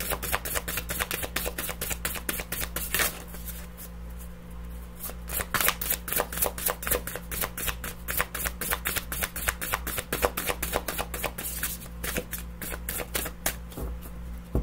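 A deck of tarot cards being shuffled by hand: a quick run of crisp card flicks and slaps, several a second, that eases off for a moment about four seconds in and then picks up again.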